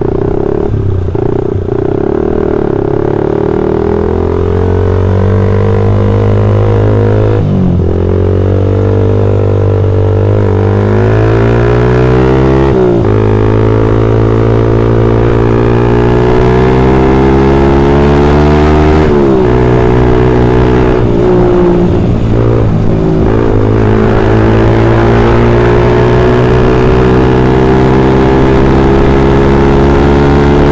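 Suzuki Satria FU motorcycle's 150 cc single-cylinder four-stroke engine pulling hard under throttle, its pitch climbing in each gear and dropping sharply at each of several upshifts.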